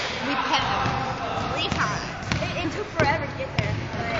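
A basketball bouncing a few times on a hardwood gym floor, in irregular thuds, with voices and laughter over it.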